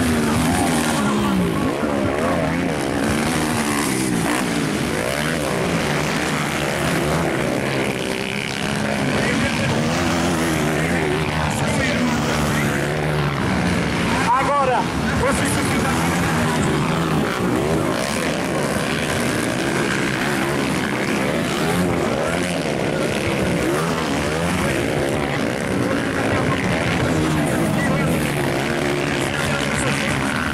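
Several motocross bikes racing, their engines revving over one another, with pitch constantly rising and falling as the riders open and close the throttle.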